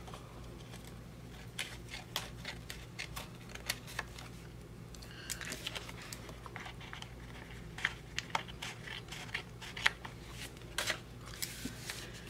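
Small craft scissors snipping paper: a string of short, irregular snips, with the paper sheet handled between them.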